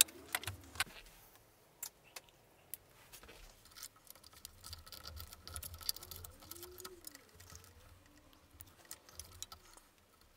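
Hands handling cables, plastic connectors and a plastic drag chain on a CNC gantry, giving scattered small clicks and light rattles, sharper in the first couple of seconds.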